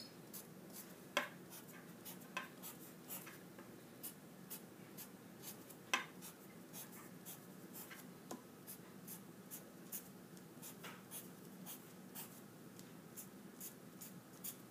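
Black felt-tip marker on paper, drawing short slash and tally marks in quick, faint strokes, about two a second.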